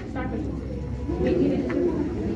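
Indistinct speech: low voices talking in a room, too unclear for any words to be picked out.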